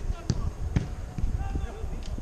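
Footballers' voices calling out across the pitch, with a few sharp knocks about half a second apart and a steady low thumping underneath.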